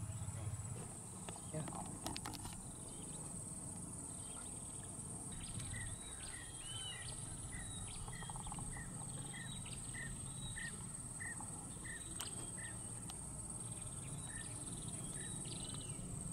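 Swamp ambience: a steady high-pitched insect chorus throughout. Over it a bird calls, with a run of short repeated notes about twice a second through the middle and some higher arching calls.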